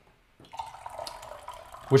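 Liquid poured in a steady stream into a small tea vessel, starting about half a second in.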